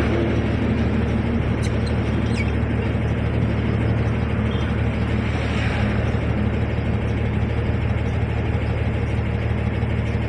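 Steady low hum of vehicle engines and road traffic.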